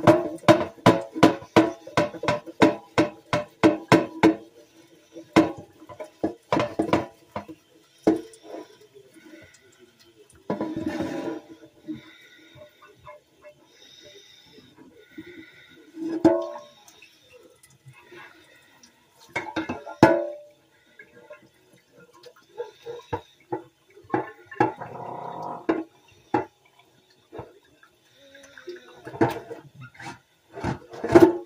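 Dishes being washed by hand at a sink: a quick run of rhythmic scrubbing strokes, about five a second, for the first few seconds. Then scattered clinks of dishes and two short runs of tap water.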